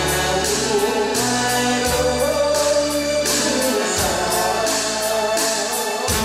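A man singing a Korean song into a handheld microphone over a karaoke backing track, with bass notes and a steady drum beat.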